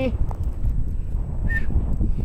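Wind rumbling on the microphone outdoors, with one brief high squeak about one and a half seconds in.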